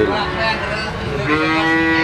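A cow mooing: one long call at a steady pitch, starting just over a second in.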